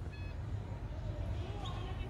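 Quiet outdoor ambience: a steady low rumble with a few faint, short high chirps near the start and again near the end, and faint distant voices.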